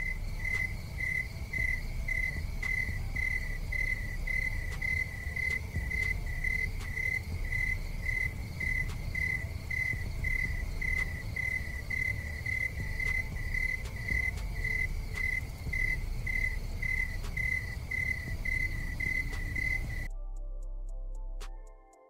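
Crickets-chirping sound effect: one even, high chirp repeating two or three times a second over a low rumble, cutting off suddenly near the end. It is the comic 'crickets' cue for dead silence, no reaction at all.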